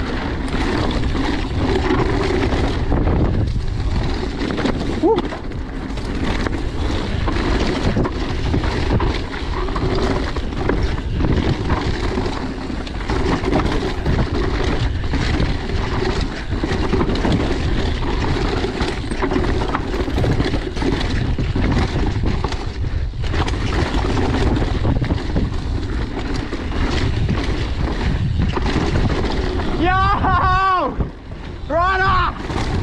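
Mountain bike descending a rough dirt trail at speed, heard from a chest-mounted camera: a steady rush of wind on the microphone over the rumble of tyres on dirt and frequent knocks and rattles from the bike over bumps.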